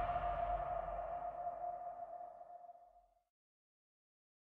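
The fading tail of a trailer's closing sound hit: one ringing tone with a reverberant wash, dying away about three seconds in.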